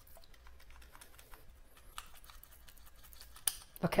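Faint, irregular small clicks and taps of a plastic candy spray bottle and its cap being handled and pulled apart, with a slightly louder click near the end.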